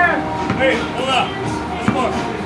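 Men's voices calling out and talking during a pickup basketball game, with one sharp knock just before the end.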